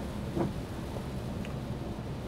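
Steady road and tyre rumble with rain, heard inside a Peugeot's cabin at motorway speed of about 110 km/h on a wet road.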